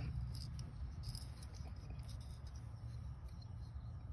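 Faint metal clicks and small scrapes of an original Leatherman multi-tool's fold-out implements being swung out of the steel handle, mostly in the first second or so, over a low steady hum.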